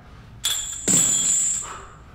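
Metal gym equipment clanking and ringing: a first hit about half a second in, then a louder one with a high metallic ring that lasts about a second.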